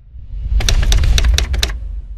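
Typewriter sound effect: a quick run of about seven key clicks over roughly a second, laid over a deep rumbling tone.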